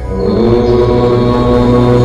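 A low chanted 'Om' comes in at the start and is held as one steady tone over a sustained ambient music drone.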